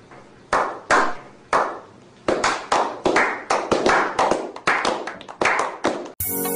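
A few people clapping their hands: at first single claps about half a second apart, then quickening into faster, overlapping claps.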